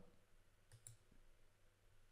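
Near silence: room tone with a couple of faint computer-mouse clicks a little under a second in.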